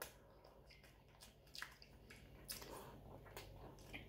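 Faint sounds of a sandwich being bitten and chewed, mostly near silence with a few soft clicks spread through.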